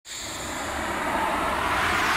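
Whoosh sound effect for an intro animation: a rushing noise that swells steadily louder.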